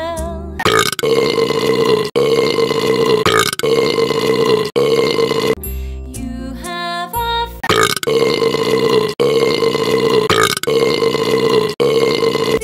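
A string of long, loud burps edited in one after another, about one every second and a half, in place of the sung words of a children's song. In the middle there is a short stretch of the song's melody.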